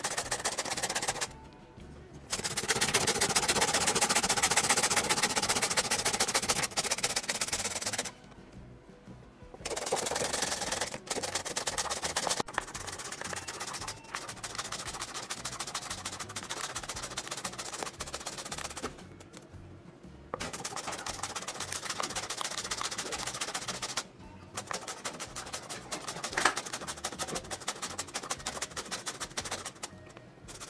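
A carrot being grated on a plastic Korean-carrot grater with metal teeth: rapid rasping strokes in long runs, stopping briefly four times.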